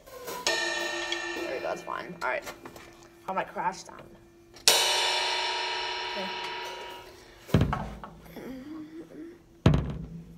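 Drum-kit cymbal struck and left to ring out, then struck harder about five seconds in and fading over a couple of seconds. Two drum hits follow, one at about seven and a half seconds and one near the end, with a voice in the gaps.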